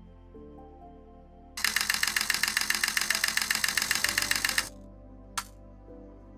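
Canon EOS R camera shutter firing a high-speed continuous burst: a rapid, even run of clicks lasting about three seconds, then one more click about a second later. Background music plays underneath.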